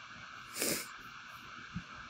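A short, sharp exhale through the nose about half a second in, over a steady background hiss, followed by a soft thump near the end.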